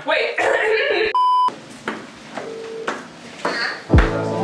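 A single short electronic beep, one steady tone lasting about half a second and about a second in, cutting across speech: a censor bleep covering a word.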